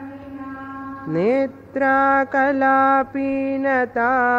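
A woman's voice chanting a Sanskrit verse in long, held notes on a single pitch. It enters with an upward slide about a second in and breaks briefly between phrases, over a faint steady drone on the same note.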